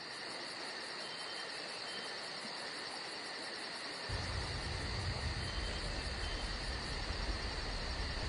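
Steady chorus of insects chirring in woodland, its high pitch unchanging. A low wind rumble joins about halfway through.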